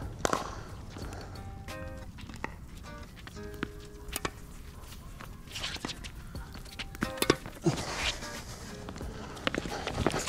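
A tennis rally on a hard court: sharp racket-on-ball hits, irregularly spaced, with shoes squeaking and scuffing on the court, over background music.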